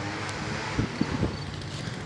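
Wind buffeting a phone's microphone over a steady low hum, with a few soft low thumps about a second in.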